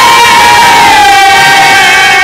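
A male Bhojpuri folk singer's voice through a stage microphone and PA, holding one long, loud, high note that slides down a little about a second in.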